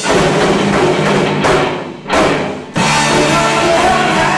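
A rock band playing live: electric guitar, bass and drum kit. The band stops briefly twice, about two seconds in and again just before three seconds, hitting back in each time.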